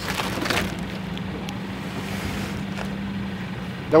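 A steady low mechanical hum runs throughout. Aluminium foil crinkles briefly in the first half-second as the wrapper is handled.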